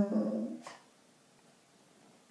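The end of a basset hound's howl: a held, pitched note that fades out within the first second. The dog is howling at his owner's absence.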